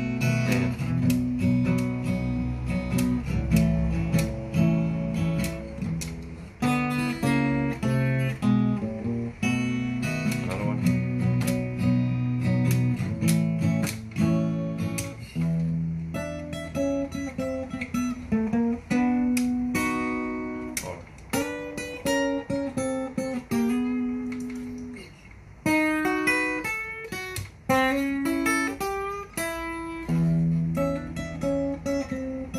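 Acoustic guitar playing a blues, with strummed chords alternating with picked single-note runs stepping down and up the neck.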